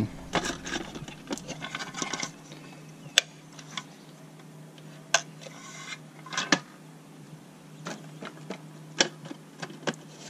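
A few sharp, separate plastic clicks and taps as a Hunter irrigation controller's dial is turned and its weatherproof outlet cover is handled, over a faint steady hum.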